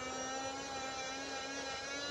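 Mini USB vacuum's small electric motor running with a steady whine.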